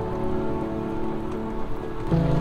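Background music: sustained, held chords over a faint hiss.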